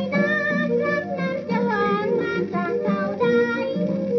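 A Thai ramwong song playing from a 78 rpm shellac record on a turntable. It sounds thin, with almost no treble.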